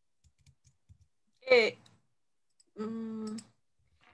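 A person's brief wordless sounds over a video-call line: a short, loud vocal sound falling in pitch about a second and a half in, then a steady held 'mmm'-like hum near the end. A few faint clicks come in the first second.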